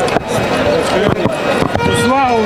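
A football being juggled on the feet: a few dull thuds of foot striking ball, over background chatter.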